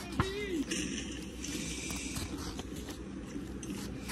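Paper rustling and slapping as the pages of a thick comic book are flipped by hand. A brief rising-then-falling voice-like sound comes just after the start, over a steady low background hum.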